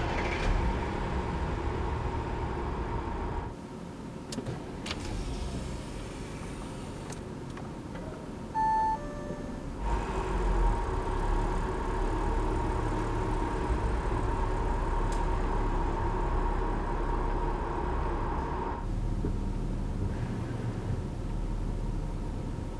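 Audi car moving slowly through a parking garage, with a low steady rumble of engine and tyres. The sound shifts abruptly a few times, and a short electronic beep sounds about nine seconds in.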